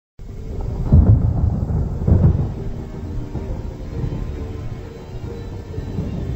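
Dark intro soundtrack music: two deep rumbling booms about a second apart, then a low sustained drone with held notes.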